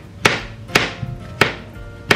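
Kitchen knife chopping button mushrooms on a plastic chopping board: three sharp chops about half a second apart, with background music.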